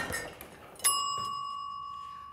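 A single bell-like ding, struck about a second in, that rings on as one steady tone and slowly fades: a scoring sound effect marking a point for gravity. Before it, the tail of a crash dies away.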